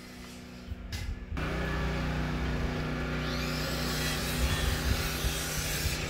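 Faint room tone, then about a second and a half in a steady machine hum with a constant low drone starts abruptly and holds.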